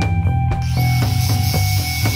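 Angle grinder cutting into a steel coil spring clamped in a vise; the cutting hiss starts about half a second in. Background music with a steady beat plays over it.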